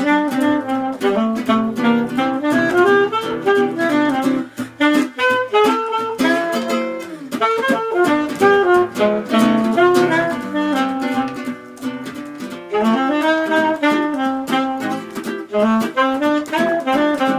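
Live soprano saxophone playing a jazzy melody over a strummed nylon-string classical guitar. The music softens briefly a few times, most of all about three quarters of the way through.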